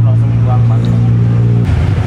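A loud, steady low hum of a running motor or engine. It breaks off abruptly near the end and gives way to a rougher low rumble.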